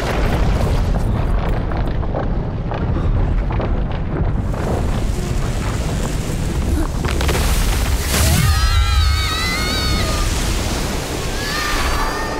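A loud, heavy rush of wind, the animated sound effect of the giant ice monster's exhaled breath blasting the characters upward. Near the end, high wavering tones ride over the rushing for a couple of seconds.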